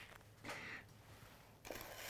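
Faint rustle of parchment paper as a sugared doughnut is set into a paper-lined wooden box: a short soft rustle about half a second in and another near the end.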